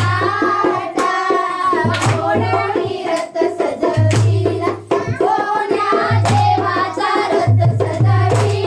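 A group of women and girls singing a fugadi folk song together, with sharp hand claps among the singing. A low hum comes and goes several times.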